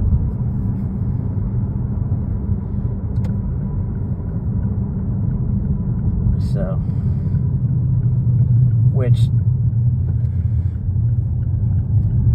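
Steady low rumble of a moving car heard from inside the cabin: road and engine noise, without let-up.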